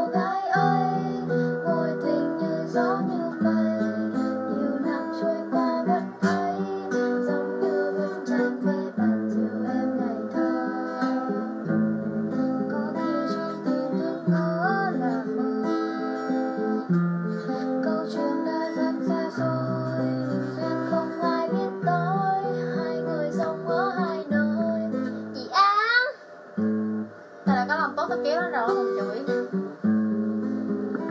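Acoustic guitar played with a young woman singing a melody over it. About four seconds from the end the guitar drops out briefly, just after a quick high upward slide in pitch.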